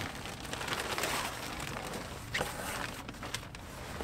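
Plastic bag rustling and fabric handling as a folded black fabric seat cover is pulled out of its packaging, with faint scattered crackles.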